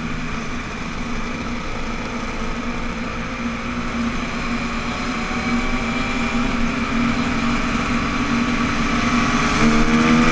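Yamaha YZ250F's single-cylinder four-stroke engine running while riding at speed on pavement, with wind on the microphone. The engine note holds steady, then climbs gradually from about halfway and rises more steeply near the end as the bike accelerates.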